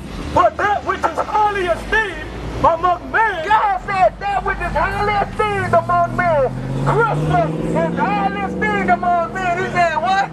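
Loud talking over road traffic, with a vehicle engine hum that grows louder from about halfway through as a car passes close by.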